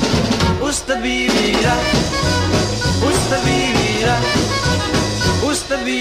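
Recorded rock-and-roll/twist song played by a full band, with a steady driving beat; a stretch between sung lines, without the lead vocal.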